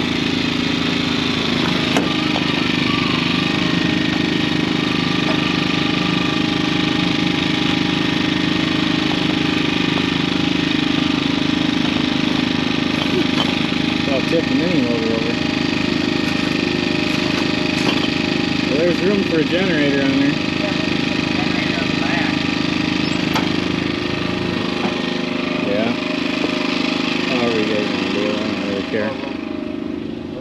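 Engine of a compact Bobcat machine running steadily at a constant speed while it holds a load on its pallet forks. Its deep part fades out near the end.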